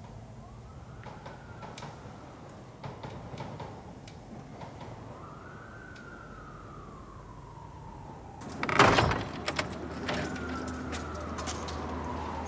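A distant siren wailing in slow sweeps that rise and then fall away, three times over. A sudden loud bang and rattle comes about nine seconds in, after which a low steady hum runs on.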